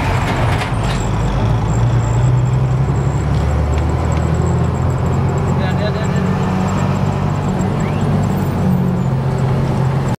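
Vehicle engine running while driving, heard from inside the moving vehicle, with steady road noise. The engine note shifts up and down in pitch as it changes speed.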